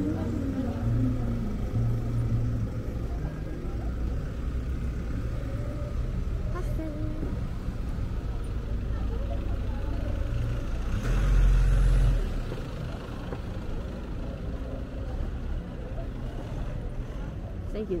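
Night city street ambience: a steady low rumble of traffic, with a louder low rumble for about a second near the middle, and faint voices of passers-by.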